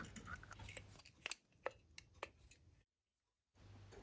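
Near silence with a few faint, sharp clicks of small metal carburetor parts being handled, mostly between about one and two and a half seconds in.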